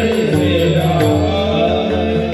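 Marathi devotional abhang music: a harmonium playing held notes that step from one pitch to the next, with a tabla stroke about a second in.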